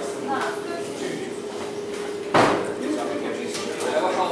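Low murmur of people talking over a steady hum, with one sharp, hard knock about halfway through.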